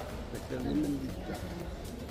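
A short, low voiced sound from a person, lasting about half a second, comes about half a second in over faint steady background noise.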